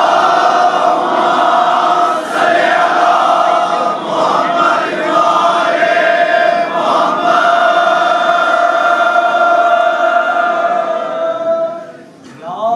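Men's voices in a Shia mourning chant, sounding together on one long drawn-out note that is held almost unbroken, with a few short dips, and fades out near the end.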